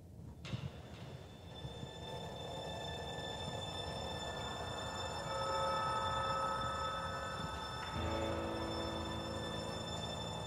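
Instrumental introduction of long held chords, fading in and growing louder, with a change of chord about eight seconds in. A short click sounds about half a second in.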